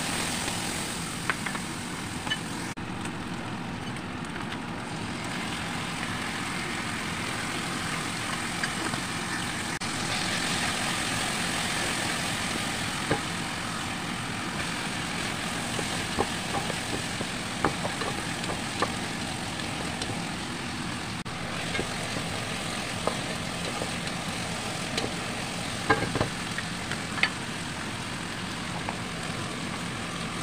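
Steady sizzle of onions, meat and strips of vegetables frying in a pot, with scattered sharp clicks and scrapes of a wooden spatula against the pot as they are stirred.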